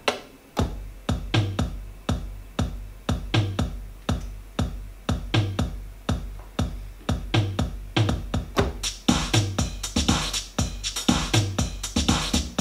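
Electronic drum-machine beat with a synthesizer bass, playing from Propellerhead Reason 10.4: a steady deep bass comes in about half a second in, under regular kick hits and fast, even ticking hi-hats. A brighter, hissier layer joins the top end about nine seconds in.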